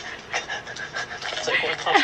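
A woman laughing through tears: short breathy gasps that build to a loud laugh near the end.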